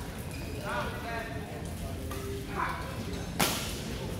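A badminton racket striking a shuttlecock once, a sharp crack about three and a half seconds in, over players' voices echoing in a large hall.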